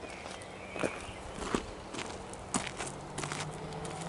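Footsteps crunching on a gravel path at a slow walking pace, about one step a second.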